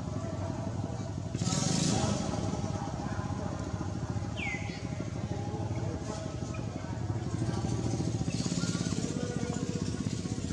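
A motor engine running steadily with a low hum. A short high chirp slides downward about four and a half seconds in.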